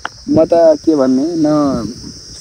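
Crickets chirring steadily in the background, with a person's voice over it from about a quarter second in to near the end, in a few drawn-out sounds that rise and fall in pitch.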